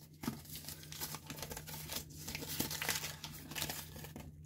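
Handling noise of rustling and crinkling with scattered small clicks, as hands work with the razor's parts and packaging, over a steady low hum.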